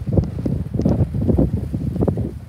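Wind buffeting the microphone: loud, irregular low rumbling gusts.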